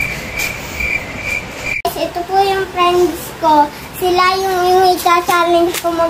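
A high-pitched beeping tone, about two beeps a second, breaks off suddenly about two seconds in. Then a child sings long held notes that step up and down in pitch.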